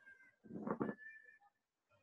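A single brief voice-like call, about half a second long, a little after the start, over faint room tone.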